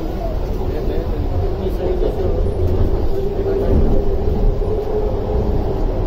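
Metro train carriage running, a steady low rumble heard from inside the car, with indistinct voices talking over it.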